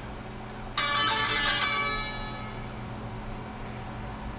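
A baglamas, a small Greek long-necked plucked lute, strummed once about a second in, the chord ringing out and fading over about a second and a half.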